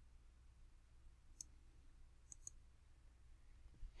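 Near silence broken by three faint computer mouse clicks: one about a second and a half in, then a quick pair about a second later.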